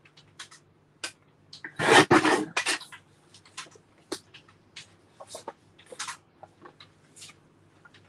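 A lever-arm paper trimmer slices through black cardstock about two seconds in, a single loud cut with a couple of quieter strokes after it. Light paper rustling and small clicks follow as the cut pieces are moved and the next sheet is lined up against the guide.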